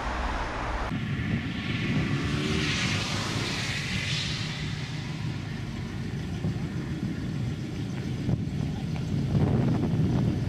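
The V8 engine of a 1959 Cadillac running at low speed as the car rolls slowly closer, its low rumble growing louder near the end. A rushing hiss swells and fades in the first few seconds. The first second is street traffic, with a van passing.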